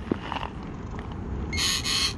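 Nokta Makro Simplex+ metal detector pinpointing a target, giving a short burst of tone near the end over a steady low background rumble.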